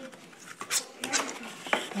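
A ruler's edge pressed and rubbed along a fold in a Christmas card to sharpen the crease, making a few short scraping and tapping sounds.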